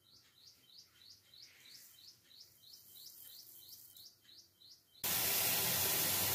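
A bird chirping over and over, faint, about two or three short chirps a second. About five seconds in it cuts off abruptly to a loud, steady hiss.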